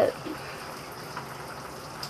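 Shower running with a steady hiss of falling water while it heats up.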